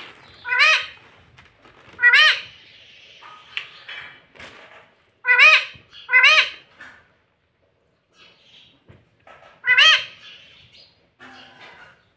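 Indian ringneck parakeet squawking: five short, loud calls, each rising then falling in pitch, spaced one to four seconds apart.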